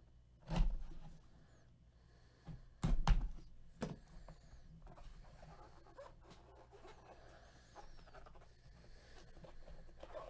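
A cardboard trading-card box being handled: a knock about half a second in, a couple of heavier bumps around three seconds and another near four, then faint rustling as it is turned over in gloved hands.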